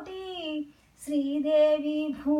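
An elderly woman singing a devotional song to Govinda unaccompanied, holding long notes. She breaks off briefly near the middle for a breath, then carries on.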